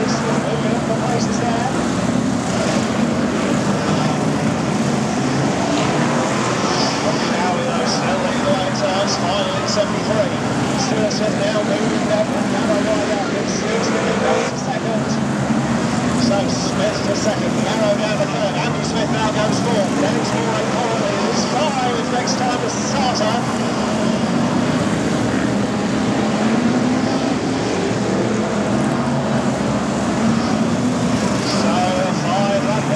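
Several BriSCA F1 stock cars' V8 engines racing round the track in a continuous loud din, their pitch rising and falling as the drivers accelerate and lift.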